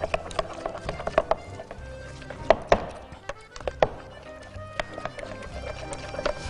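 A metal spoon stirring thick tahini sauce in a glass bowl, clinking and scraping against the glass in irregular taps, with a few louder knocks around the middle. Background music plays underneath.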